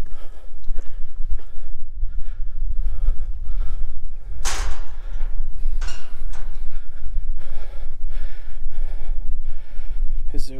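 Wind buffeting the camera microphone as a steady low rumble, with a man's breathing as he walks; one louder breath or gust comes about halfway through.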